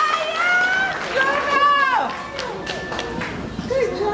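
High-pitched voices with long held notes and sliding pitch, though no words are made out.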